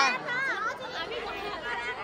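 Chatter: several voices talking at once, quieter than the loud talk around it.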